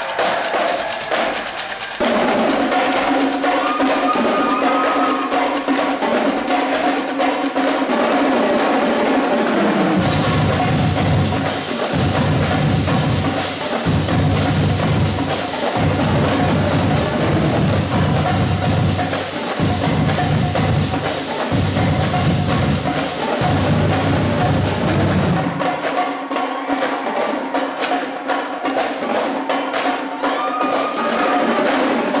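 Marching drumline playing a cadence: snare drums, tenor drums, bass drums and cymbals in a fast, dense rhythm. The bass drums come in about a third of the way through, pounding in phrases broken by short gaps, and drop out near the end.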